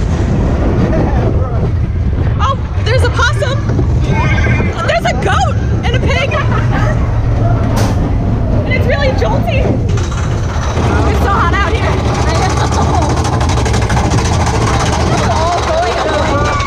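Mine-train roller coaster running loudly along its track, a steady rumble, with riders screaming and whooping at intervals.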